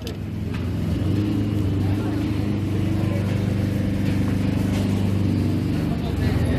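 A tractor's diesel engine running steadily with a low hum, swelling over the first second and then holding even.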